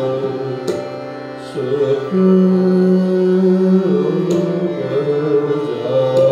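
Hindustani classical vocal performance: a male voice sings long held notes over a tanpura drone and harmonium, with a few tabla strokes.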